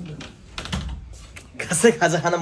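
A run of quick light clicks, then a man's loud shout about one and a half seconds in.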